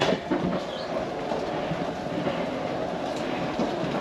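Hydraulic slide-out room of a fifth-wheel RV retracting: the slide mechanism runs with a steady mechanical noise as the room moves in.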